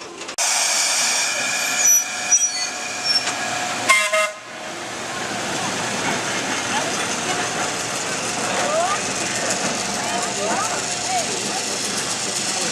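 1924 Pacific Electric electric freight locomotive rolling slowly past, with a short horn toot about four seconds in. After the toot comes steady running noise with a faint steady hum.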